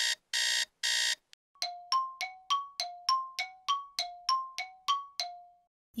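Cartoon sound effect: three short buzzy electronic beeps, then a quick run of about a dozen ringing pings alternating between a low and a high note, about three a second. It works as a thinking-time cue while a quiz question waits for an answer.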